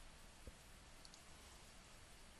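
Near silence with a few faint computer mouse clicks: one about half a second in, then two close together just after a second.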